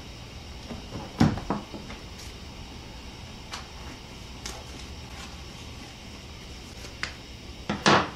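Scattered short clicks and knocks from handling a plastic vacuum-sealer bag at the sealer, the loudest about a second in, over a steady low hum.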